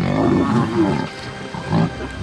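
Lions growling during a fight, with a male pride lion attacking a lioness. The growls are rough and low, loudest in the first second, with another short growl near the end.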